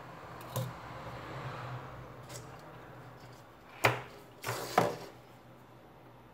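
Handling noise: light clicks and knocks of a tablet motherboard and its metal parts being moved about and set down on a silicone work mat. The two sharpest knocks come about four and five seconds in, over a faint steady low hum.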